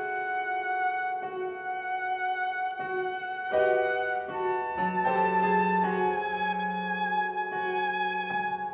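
Alto saxophone playing long held notes over piano in a slow classical sonata movement. A soft note recurs about every second and a half beneath it, and a lower held note comes in about five seconds in.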